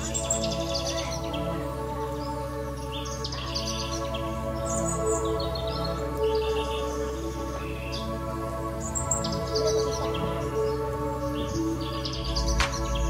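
Bird chirps in short bursts every second or two over calm music with steady held chords.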